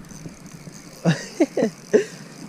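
A man laughing in four short, quick bursts in the second half, after a second of faint background noise.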